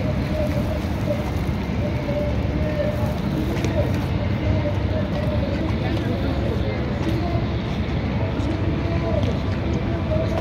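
Chatter of many people's voices, with no clear words, over a steady low rumble.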